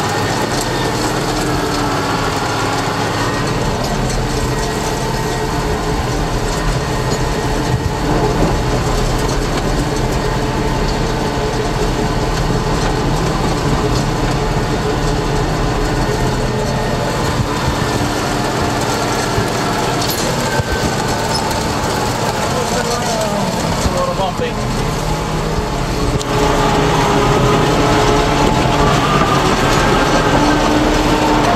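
Tractor engine running steadily under PTO load, driving a broadcast seeder, heard from inside the cab. It gets a little louder near the end.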